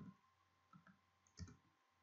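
Faint computer keyboard keystrokes: a few light clicks, the clearest about a second and a half in, as a word is typed into a text field.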